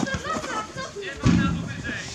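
Players' voices calling out across a football pitch, with a single low thud about a second in.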